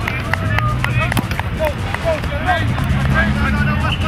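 Lacrosse players shouting short calls to each other during warm-up, over a steady low hum, with a few sharp clicks.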